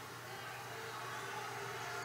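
Quiet steady hiss with a faint low hum, with no distinct sound standing out: room tone.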